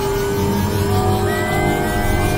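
Experimental electronic synthesizer drone: a rough, noisy low rumble under several held tones, some of which glide slowly upward, giving an engine-like revving rise.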